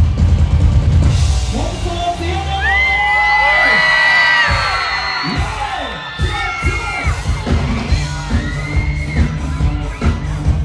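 Live band music at a pop concert. The heavy bass beat drops away about a second in, and several voices whoop and yell in rising and falling cries over a thinner backing. The bass and drums come back in near the end.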